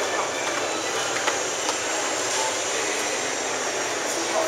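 Steady background noise of a large indoor hall, an even hiss-like din with a few faint clicks.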